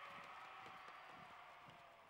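Faint footfalls of a column of soldiers marching on a paved street, boots striking in a loose, many-footed patter that slowly fades.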